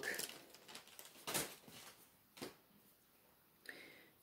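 Faint rustling and a few soft taps of plastic bags of diamond painting drills being handled over the canvas.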